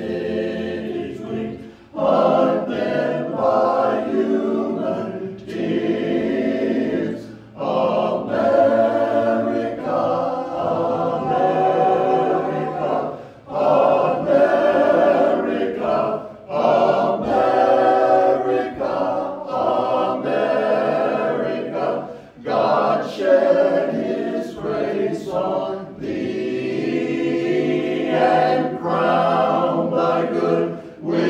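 Men's barbershop chorus singing a cappella in close four-part harmony. The song moves in phrases with brief breaks between them.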